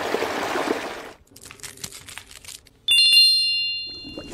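A makeup brush spreads a thick, glittery Glamglow GravityMud mask across skin, giving a sticky, squishy brushing sound for about the first second, followed by quiet soft clicks. About three seconds in, a bright, high, bell-like ding rings out and fades over about a second.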